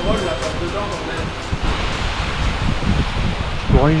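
Steady rush of a mountain stream running among the rocks below, loudest around the middle, over low rumbles on the microphone. A man starts speaking at the very end.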